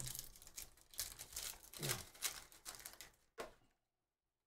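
A foil trading-card pack of 2023 Panini Phoenix football is torn open and crinkled by hand, a run of crackling rips that stops about half a second before the end.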